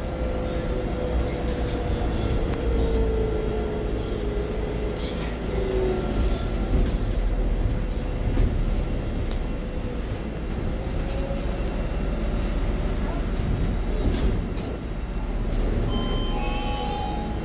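Cabin noise of a ST Linkker LM312 electric bus on the move: a steady low rumble with a faint electric drive whine that falls in pitch over the first few seconds and comes back later. Scattered sharp clicks and rattles from the interior fittings.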